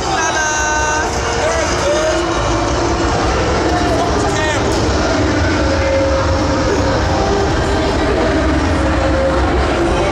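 Scattered voices of a milling crowd in a hard-walled hallway over a loud, steady low rumble.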